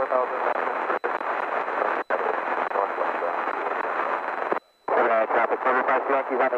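Aviation radio chatter: a pilot's voice over the aircraft radio, thin and narrow, making a position report on the common traffic frequency. It cuts out very briefly twice, then drops out for a moment near the end before the voice comes back.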